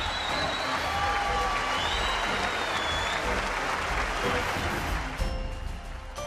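Large audience applauding, with music underneath; the applause dies away about five seconds in, leaving the music.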